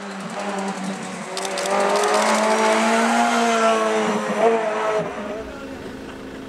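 Hillclimb race car's engine approaching at speed, revs climbing and dropping through gear changes, loudest from about two to four and a half seconds in and then fading.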